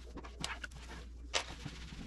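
Cloth wiping a bare wooden cabinet shelf: soft rubbing with a couple of sharper swishes, about half a second in and again near 1.4 s, over a low hum.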